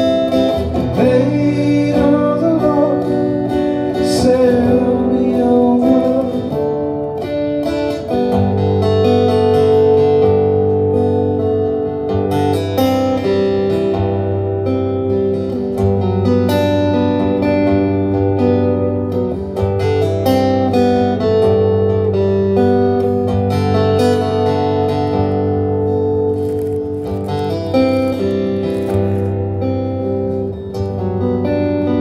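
Steel-string acoustic guitar strummed in a steady chord pattern, an instrumental break between verses of a folk song, played through a live PA.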